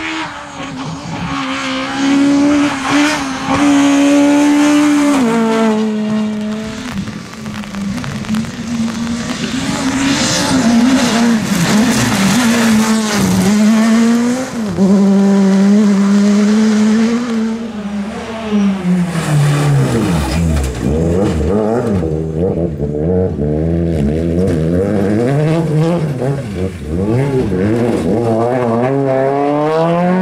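Rally car engines at high revs, one car after another, rising and falling as they shift through the gears. About two-thirds of the way in, the engine note drops steeply as a car slows, then climbs again in repeated steps through the gears.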